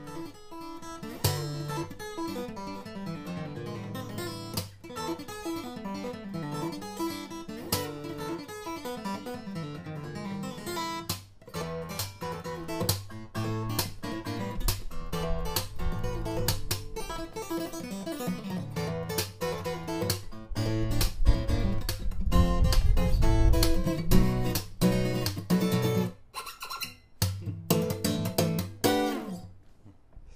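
Hippo Acoustic OM-body steel-string acoustic guitar played fingerstyle: picked melody notes over bass notes. The playing swells louder and fuller about two-thirds of the way through, then eases off and stops just before the end.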